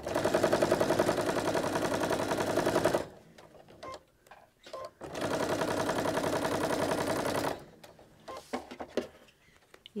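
Electric sewing machine stitching a seam through pieced quilt-block fabric. It runs in two bursts of steady, rapid stitching, about three seconds and then about two and a half seconds, with a short pause between. A few faint clicks follow near the end.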